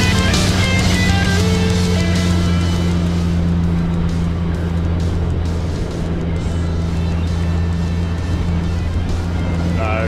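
Boat's outboard motor running steadily at speed, a constant low drone with the rush of hull and wind over choppy water. Rock guitar music fades out over the first two or three seconds.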